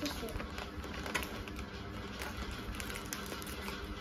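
Shiny gift-wrapping paper crinkling and rustling as a present is unwrapped by hand: a scatter of small, irregular crackles.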